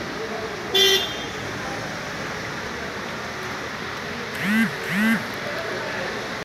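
Steady street traffic noise with a car horn giving one short honk about a second in. Near the end a person's voice gives two short calls, each rising then falling in pitch.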